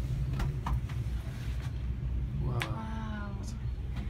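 Steady low rumble inside a moving cable car gondola, with a few light clicks. About two and a half seconds in comes a brief, drawn-out high-pitched cry of under a second that falls slightly.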